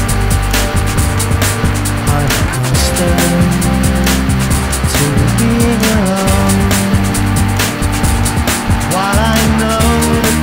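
Loud band music from a rock album track: a drum kit keeping a steady beat over sustained bass. Near the end, a lead line plays bending notes.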